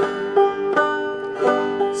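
Open-back banjo played clawhammer style: the basic hit-brush-thumb stroke with the hit falling on the first string, in an even rhythm of about three strokes a second over ringing open strings.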